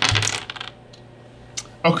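Two small dice thrown onto a wooden tabletop, clattering in a quick run of clicks that stops within the first second.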